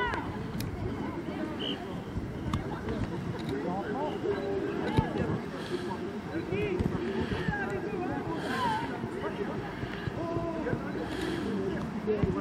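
Indistinct shouts and calls from young rugby players and sideline spectators, several voices overlapping at a distance with no clear words.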